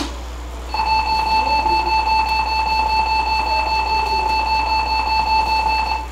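A sharp click, then under a second later a loud, steady electronic school bell tone that holds unbroken for about five seconds before cutting off: the signal that class is over.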